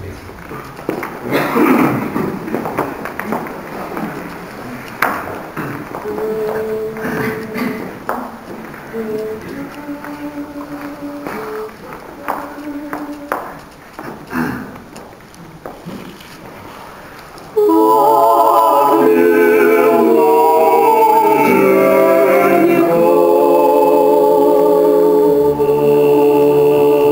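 A male a cappella vocal ensemble starts a slow lyrical Russian song about two-thirds of the way in, several voices singing in close harmony. Before that there are scattered clicks and rustles and a few quiet held notes.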